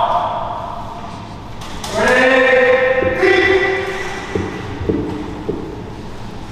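A voice calling out in two long drawn-out tones, followed by a few light knocks.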